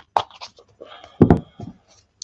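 A deck of tarot cards being shuffled by hand: short scuffs and taps, the loudest a thump just over a second in.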